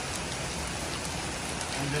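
Heavy rain falling steadily onto a swimming pool and its paved deck.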